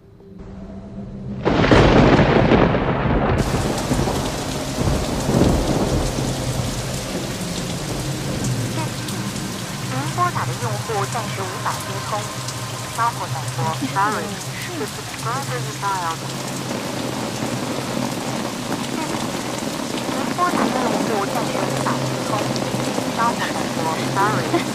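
A loud thunderclap about a second and a half in, followed by steady heavy rain.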